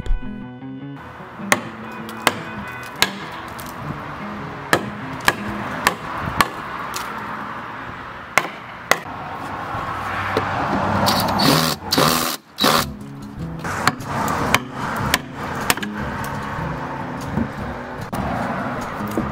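Sharp knocks on wood, irregularly spaced, with a rougher burst of scraping and knocking a little past the middle, as sections of wooden deck railing are taken off. Background music plays throughout.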